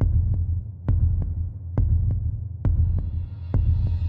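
Suspense sound design: a deep low drone under a heartbeat-like double thump that repeats a little under once a second. Faint high tones creep in near the end.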